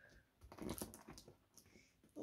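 Faint taps and scratches of fingers on a cardboard box, picking at its sellotape seal, a few short clicks around the middle.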